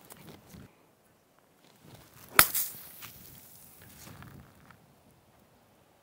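A golf club striking a ball in a pitch shot played off pine straw: one sharp crack about two and a half seconds in, the loudest sound, with a brief swish just after it.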